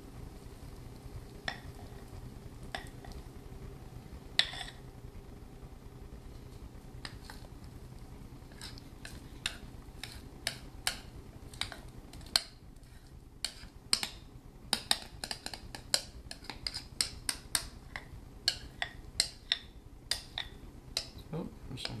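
A spoon scraping and tapping against a glass mixing bowl as thick batter is scraped out into a glass baking dish: scattered clicks at first, then a quick run of clicks and scrapes in the second half, over a faint steady hum.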